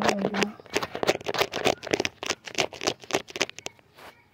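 Fingernails scratching skin right against a phone's microphone: a rapid run of rasping scratch strokes, about five a second, that stops shortly before the end.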